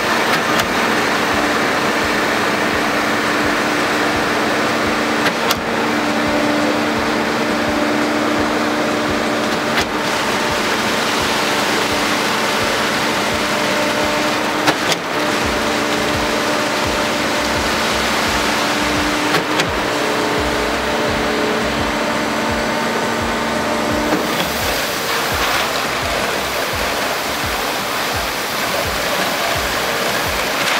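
Concrete mixer truck and concrete pump running, with a steady drone and the wash of concrete sliding down the drum chute into the pump hopper, broken by a few sharp knocks. About 24 seconds in the drone stops and the sound becomes a steadier hiss.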